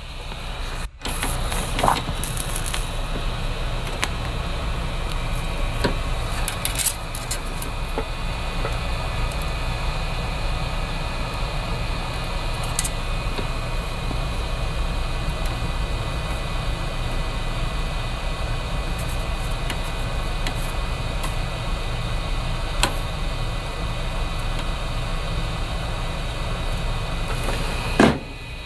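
A steady fan or blower whir, coming up about a second in and running evenly, with a few light clicks of tools on the workbench.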